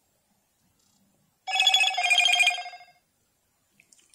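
Electronic chime from a Motorola Moto G8 Plus smartphone: two notes about a second and a half in, a short one and then a longer one that fades out, lasting about a second and a half in all.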